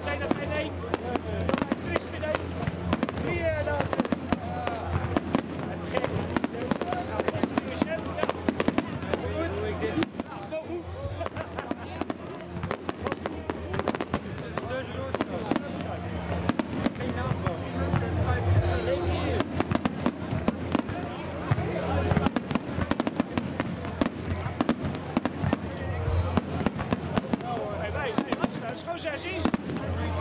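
A fireworks display: a continuous run of shells bursting and crackling, with music and crowd voices underneath.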